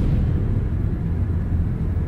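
A loud, low, steady rumble with no melody, a dark drone in the soundtrack.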